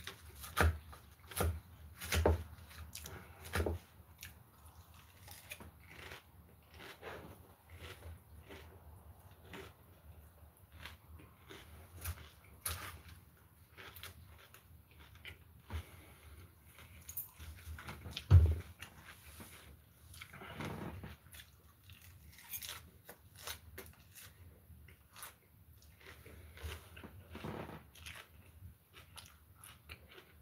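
Close-up chewing of a lettuce salad: irregular crisp crunches and mouth clicks that go on throughout, with one louder thump a little past halfway.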